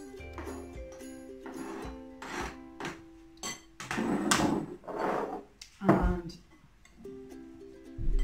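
Light background music with steady held notes, over a few short clatters and rustles from handling the salad and chopping board, the last one a low knock about six seconds in.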